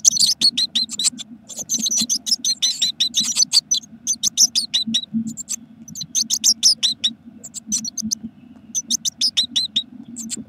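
Blue tit nestlings begging for food: rapid bursts of short, high, thin cheeping calls, many a second, broken by brief pauses. A steady low hum runs underneath.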